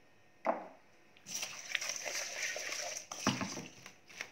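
Crispy fried onion being added to a salad in a bowl: a knock, then about two seconds of dry crackly rustling, then another knock.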